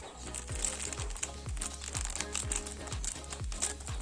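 Thin plastic sachet crinkling as it is handled and snipped open with scissors, over background music with a steady low beat about three times a second.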